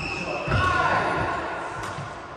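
Badminton rally in an echoing sports hall: players' footfalls thudding and shoes squeaking on the wooden court. A short sharp crack of a racket striking the shuttlecock comes near the end.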